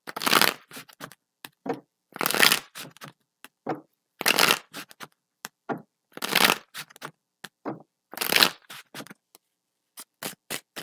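A deck of tarot cards being shuffled by hand: five rustling bursts about two seconds apart, with small taps and clicks of the cards between them.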